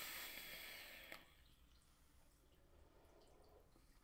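Faint hiss of a long draw on a Wasp Nano rebuildable dripping atomizer, air and vapour pulled through the coil, ending about a second in; then near silence while the vapour is held.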